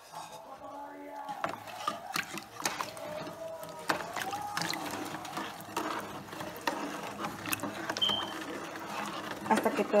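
A spoon stirring sugar and piloncillo into water in a deep pot, with irregular scrapes and light knocks of the spoon against the pot.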